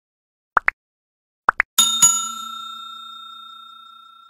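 Two quick double clicks like a computer mouse, then a small bell dinged twice in quick succession and left ringing, fading over about two seconds. It is the stock like-and-subscribe notification-bell sound effect.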